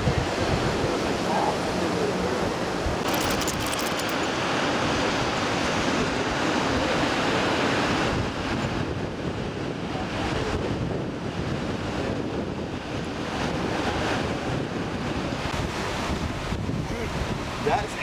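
Ocean surf breaking and washing up the beach as a steady rushing noise, with wind buffeting the microphone.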